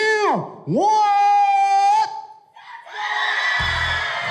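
A voice calls three quick rising-and-falling 'ooh's, then holds one long high note, building suspense before a battle result. About three seconds in, a crowd breaks into cheering and screaming.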